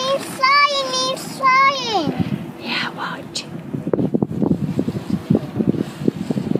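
A high-pitched voice calling out in two long held notes that slide in pitch during the first two seconds, followed by wind buffeting the microphone with irregular low thumps.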